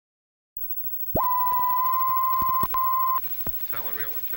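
Film-leader countdown sound effect: faint old-film crackle with scattered clicks, then a loud, steady, high beep that lasts about two seconds, cut briefly by a click partway through. Near the end a short voice-like sound begins.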